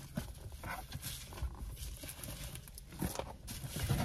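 Scattered light knocks, clicks and rustling of objects being handled and moved about, a little busier near the end.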